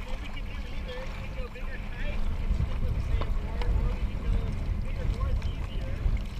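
Wind buffeting the microphone, a steady low rumble, with a faint voice wavering in the background.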